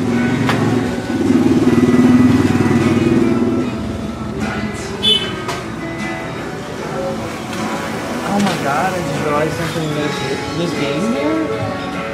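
A motorcycle engine running close by, loudest about two seconds in and gone by about four seconds. Background pop music with singing plays throughout.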